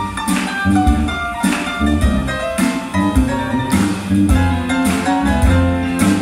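Live band playing an instrumental passage: guitar and keyboard notes over a rhythmic bass line and drums.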